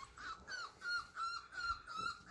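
Young Bull Terrier puppies whimpering: a rapid string of short, high, squeaky whines, each falling slightly in pitch.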